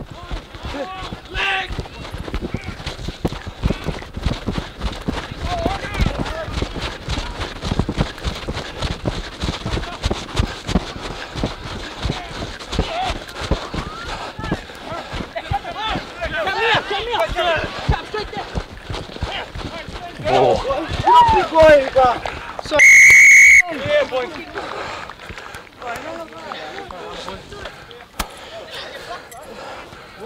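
Referee's whistle: one loud, steady blast of under a second about three-quarters of the way through, stopping play. Before it, players shout across the field over scattered thuds and noise of play.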